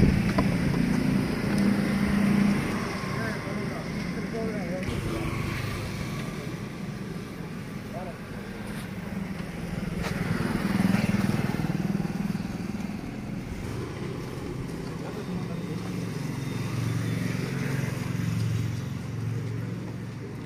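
Street traffic: motor vehicles, motorcycles among them, running by on the road, their engine rumble swelling and fading a few times, with indistinct voices.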